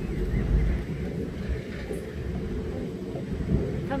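Low, uneven rumble of a moving amusement-ride car running along its overhead track, mixed with wind on the microphone.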